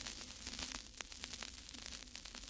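Steady static hiss peppered with irregular crackling clicks, an old-record crackle effect laid under the closing graphic, with a faint low hum beneath.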